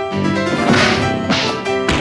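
Background music, with two loud swishing hits about a second in and a sharp crack just before the end.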